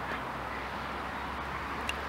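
Steady noise of road traffic, with a low hum underneath.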